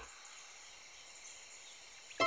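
Very faint, steady background noise with no distinct event; the soundtrack is all but silent.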